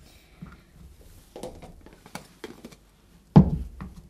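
Knife cutting a chili on a plastic cutting board: a few light knocks and taps of the blade, then one much louder thump past three seconds in.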